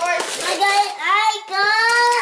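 A young child singing in high, held notes that slide up and down.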